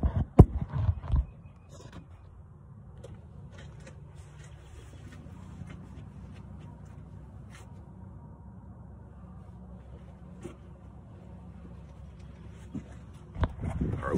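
Phone camera being handled and propped up in the engine bay: a few knocks and rubs at the start, then a faint steady low hum with occasional light clicks. The engine is not yet running.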